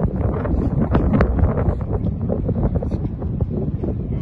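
Wind buffeting the microphone: a loud, low rumble with scattered clicks through it.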